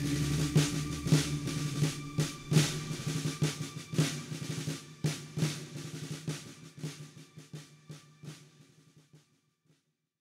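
Instrumental ending of a country ballad: snare drum beating about twice a second with rolls, over a held low note, fading out to silence about nine seconds in.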